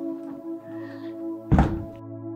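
A door shut hard with a single heavy thud about one and a half seconds in, over soft synthesizer background music.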